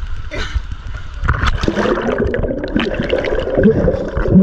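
River water gurgling and bubbling around a camera as it goes under the surface. The sound turns louder and bubbly about a second in.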